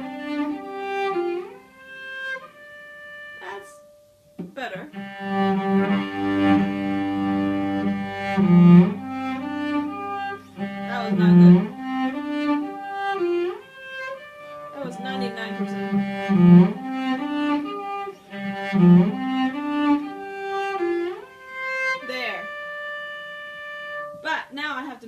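Solo cello played with the bow, a slow melodic phrase in practice. It breaks off briefly about three seconds in, then resumes, with a lower note sounding beneath the melody for a few seconds.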